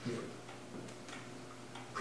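Faint room tone with a few soft ticks.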